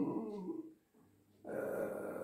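A man's voice trailing off at the end of a phrase, then a brief gap of dead silence about halfway through, then a faint low murmur or breath before he speaks again.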